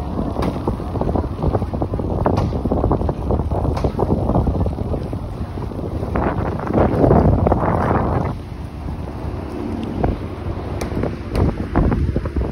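Wind buffeting a phone's microphone, a low gusty noise that swells about six seconds in and drops off suddenly a little after eight seconds.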